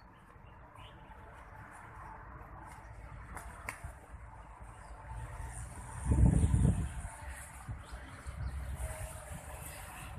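Faint outdoor ambience while walking with a phone camera: a low uneven rumble of wind buffeting the microphone, swelling into a louder gust about six seconds in, with faint bird chirps.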